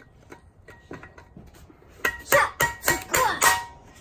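Rubber mallet knocking a plastic centre cap into a Rota P45R alloy wheel. A few faint taps come first, then a quick run of about five loud blows with a ringing tone in the second half.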